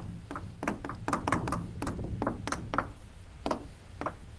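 Chalk tapping and scraping on a chalkboard as someone writes: about a dozen short, sharp, irregular taps, thinning out near the end.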